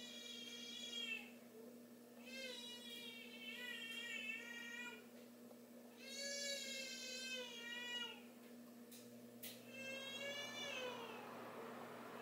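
A cat meowing four times, each meow a long drawn-out call with a wavering pitch, over a steady low electrical hum. Two short clicks come between the third and fourth meow.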